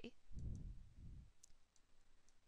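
Faint computer mouse clicks as a menu item is selected, with a soft low rumble lasting about a second near the start.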